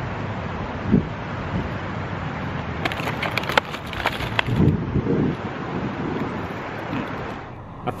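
Wind on the microphone over a steady outdoor hum, with a crackling rustle of a cardboard donut box being handled about three seconds in.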